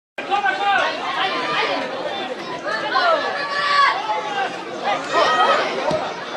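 Several voices talking and calling out over one another: a chatter of people, which carries on as play moves toward the goal.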